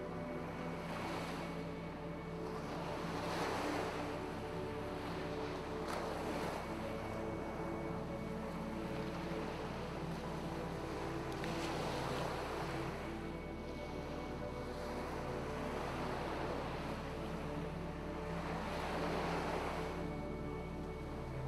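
Calm background music with held tones, mixed with ocean waves that swell and wash away every few seconds.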